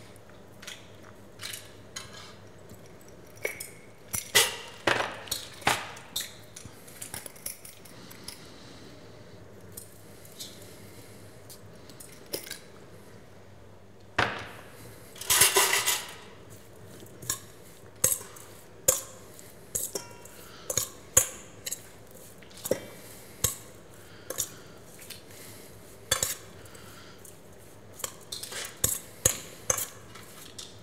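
Metal tongs and a serving spoon clinking and scraping against a stainless steel pan while seafood spaghetti is lifted out and plated: scattered light clicks, with a longer scrape about halfway through.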